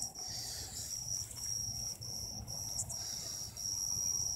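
A cricket trilling: one steady high-pitched tone, broken into pulses about two or three times a second. A low rumble of the camera being handled lies underneath.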